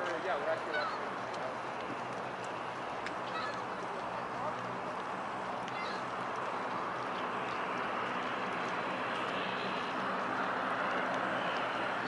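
Steady outdoor background noise, a even hiss with no single clear source, with brief faint wavering calls or voice-like sounds in the first second.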